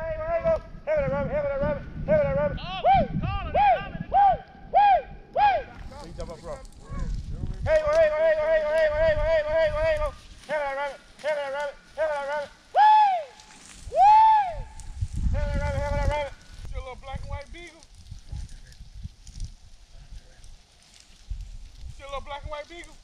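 Beagles baying on a rabbit's trail: a run of long, wavering bays and short, arched yelps that thins out after about sixteen seconds, with brush rustling underfoot at times.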